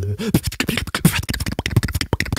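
Solo beatboxing: a fast, dense run of mouth-made percussive clicks and snares, with a short bending bass note near the start.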